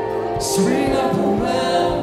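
Group singing of a gospel worship song over held chords, with a steady low beat a little over twice a second.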